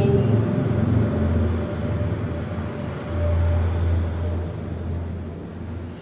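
The last sung note of a Quran recitation over a loudspeaker dies away at the very start, then a low steady rumble of the hall's background noise swells and fades, loudest from about three seconds in.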